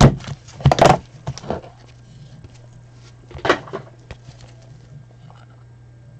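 Gloved hands opening a small cardboard trading-card box and handling the card stack: a cluster of short taps and scrapes in the first second and a half, another about three and a half seconds in, over a steady low hum.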